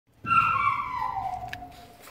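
A small dog whining: one long, high whine that starts about a quarter second in and slides steadily down in pitch as it fades.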